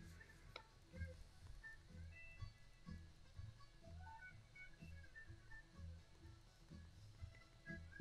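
Faint background music: a soft, steady low beat under scattered melody notes.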